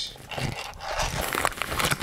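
Crinkling and rustling of a plastic zip-top bag being handled, a dense run of small crackles that builds up about half a second in.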